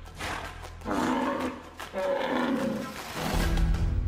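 A bull bellowing twice, each call sliding down in pitch, over background music with a low bass that swells near the end.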